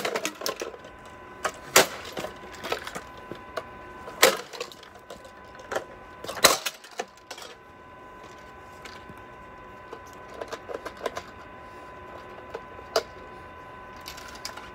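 Sharp cracks and knocks of a Yonanas dessert maker's plastic parts being struck and broken apart. There are several loud strikes in the first seven seconds, then lighter clicks and ticks near the end.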